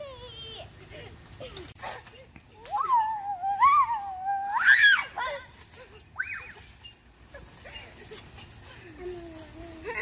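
A girl's long, high-pitched squeal from about three seconds in, wavering and then jumping higher before it breaks off near the five-second mark. Shorter, quieter vocal sounds come before and after it.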